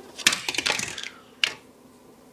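A toy falling and clattering: a quick run of small hard knocks and rattles, then one more knock about a second later.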